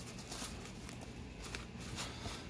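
Faint rustling and a few soft clicks of a fabric seat-cover headrest cover being handled as its hook-and-loop tabs are pressed down, over a low steady hum.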